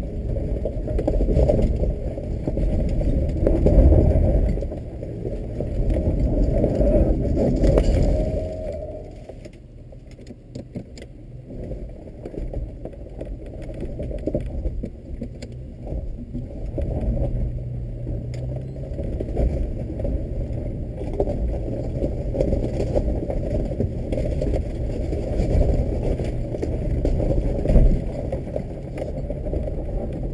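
Suzuki XL7's V6 engine pulling under load up a steep, loose rocky hill climb, heard from inside the cabin, with tyres crunching over gravel and short knocks and rattles as the vehicle bumps over rock. The engine is louder for the first eight seconds or so, eases off around nine seconds in, then runs steadily.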